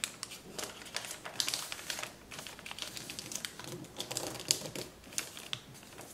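A sheet of kraft paper being folded and creased by hand: irregular crisp crackles and rustles of the paper, with a sharper snap about four and a half seconds in.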